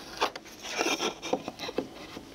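Wheel marking gauge scribing a line around a hardwood board: the steel cutter scratches dryly along the wood in several short strokes, with a few light clicks.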